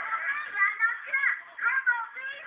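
A crowd of young people shouting and yelling excitedly over one another in high voices, with one voice yelling loudest. The sound is thin and muffled, with no highs.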